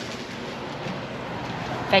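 Steady, even outdoor background noise of street traffic, with no distinct single events; a woman starts speaking at the very end.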